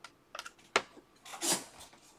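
A few light clicks and a short rustle about one and a half seconds in, from trading cards being handled on a tabletop.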